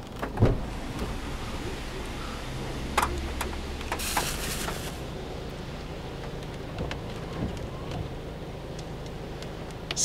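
Inside a car driving in heavy rain: a steady low engine and road rumble with the hiss of rain and wet tyres. There is a sharp thump about half a second in, and a brief louder hiss around four seconds in.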